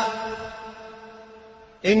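A man's sermon voice ends a phrase, and its echo dies away over about a second in a mosque. Then there is low room tone until his voice comes back in near the end.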